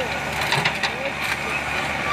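Crawler excavator's diesel engine running steadily, with scattered short clicks and knocks over it.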